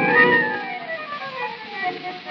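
Instrumental tango from a 1920 acoustic recording by a small orquesta típica of bandoneón, violin and piano, with a dull, narrow sound. A high violin note slides down in pitch over about a second and a half, and the music grows quieter.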